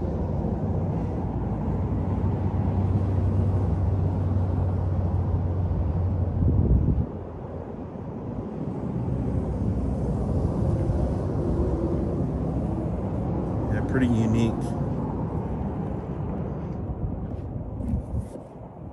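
Steady low rumble of motor vehicle noise, with a low hum that is loudest for the first seven seconds and then drops away suddenly.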